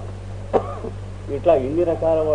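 A man clears his throat once, sharply, about half a second in, then starts talking again shortly before the end. A steady low hum runs under the recording throughout.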